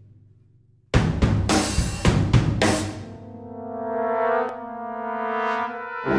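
Brass band music: a few loud, sharp drum-kit and cymbal hits about a second in, then the brass come in with a held chord that swells louder, dips briefly and swells again.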